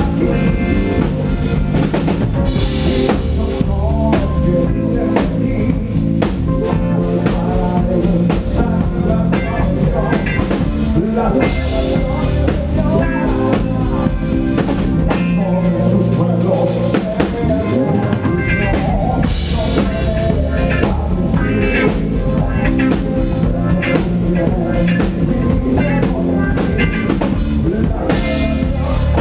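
Live rock-style worship band playing: a drum kit keeping a steady beat with snare and bass drum, under a Duesenberg electric guitar through Fender Twin Reverb amps, bass and a lead singer.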